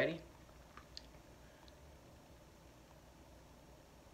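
Quiet room tone with a few faint, short clicks in the first second or so, while two people hold still.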